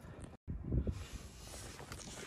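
Rustling and low knocks from a hand-held camera being moved, over a faint steady hiss, with a short drop to silence at an edit cut.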